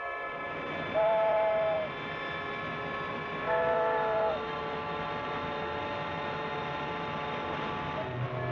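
Two blasts of a two-tone car horn, each just under a second long and about two and a half seconds apart, over steady street noise and held tones on an old film soundtrack.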